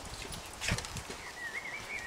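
Quiet footsteps and scuffs on a paved path. About two-thirds of the way in, a thin, wavering high whine starts and carries on.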